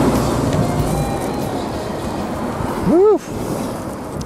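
A tanker truck passes close by on the road; its engine and tyre noise is loudest at the start and fades over the next few seconds. About three seconds in comes one short voice-like call that rises and falls in pitch.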